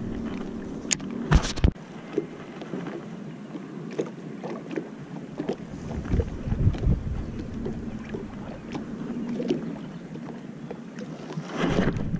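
Small waves lapping against a fishing boat's hull, with scattered small ticks and soft thumps. Wind buffets the microphone with a low rumble for the first couple of seconds, broken by two sharp knocks, then drops away suddenly.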